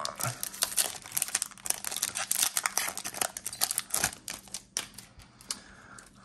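Foil-wrapped trading-card pack being torn open and crinkled by hand, a rapid, irregular crackling that thins out and quietens after about four seconds.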